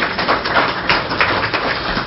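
Audience clapping: a dense patter of many hand claps.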